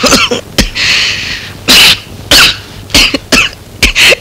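A man coughing in a string of short, loud coughs, about seven of them, unevenly spaced.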